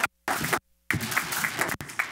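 Small audience applauding, the clapping dropping out briefly twice.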